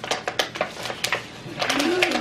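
Plastic packaging crinkling and crackling with irregular sharp clicks as a small present is unwrapped.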